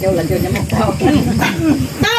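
Several people's voices in overlapping conversation around a table.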